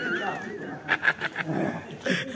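A wavering, whistle-like call lasting under a second, among people's voices.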